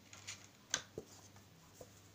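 A white plastic lid being twisted off a glass jar and set down on a wooden tabletop: a few light scrapes, a sharp click about three-quarters of a second in, then a duller knock just after and a small tap near the end.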